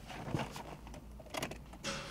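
Scattered light clicks and rattles of a car key being handled and turned in the ignition of a 2015 Chevrolet Cruze, inside the cabin.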